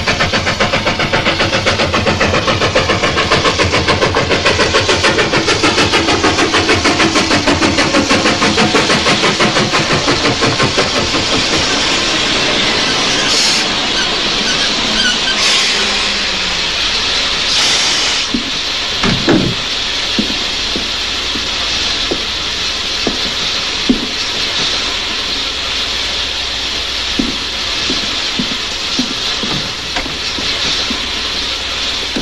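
Steam locomotive chuffing in a rapid, even rhythm that slows and drops in pitch as the train loses speed. This is followed by three hisses of released steam about halfway through, then a heavy thump and scattered clanks and knocks.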